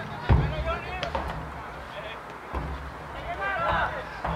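Distant shouts and calls from players on a soccer field, over a low rumble, with one sharp thump about a third of a second in.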